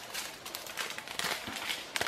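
Faint crinkling of small plastic zip bags of round diamond-painting drills as they are handled, with scattered light ticks.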